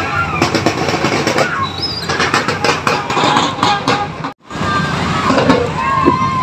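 Marching band drums beating in a street procession, with a crowd of voices calling out over them. The sound cuts out for an instant a little over four seconds in, then the voices carry on.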